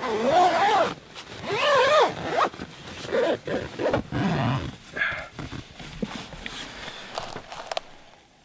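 Tent door zipper pulled open in two long strokes, its pitch rising and falling with the speed of the pull, followed by several shorter zips and rustles.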